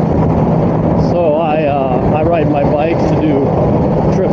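Steady wind and road noise of a 2005 Honda GL1800 Goldwing cruising at highway speed, with its flat-six engine running underneath. From about a second in until near the end, a wavering voice-like sound rides over it.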